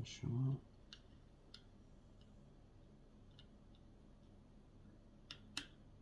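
Small parts of a scale-model engine clicking faintly as they are handled and pushed into place. The clicks are scattered, with two sharper ones close together near the end, and a short vocal sound comes right at the start.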